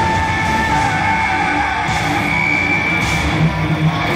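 A heavy metal band playing live through a concert PA, with distorted electric guitars and drums and long held notes over them.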